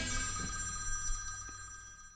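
The band's final struck chord ringing out and fading away, bright metallic tones slowly dying to nothing.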